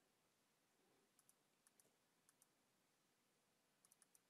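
Near silence, with a few very faint clicks from a computer mouse, a couple of them in quick pairs, as a list is scrolled and selected on screen.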